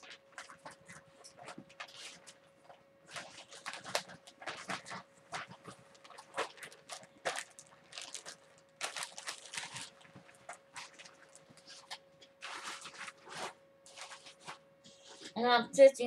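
Plastic zip-top bags and fabric rustling and crinkling in irregular bursts as they are handled, over a faint steady hum.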